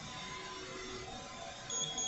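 Steady low background noise with a short, high-pitched electronic beep near the end.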